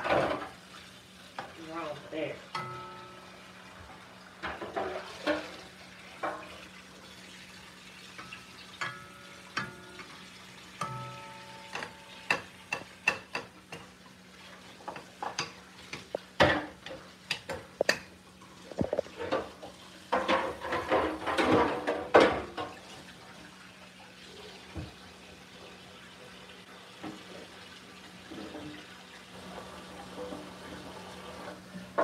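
Kitchen clatter: metal pots, lids and utensils knocking and clinking around the stovetop, some clinks briefly ringing, busiest about twenty seconds in, over a steady low hum.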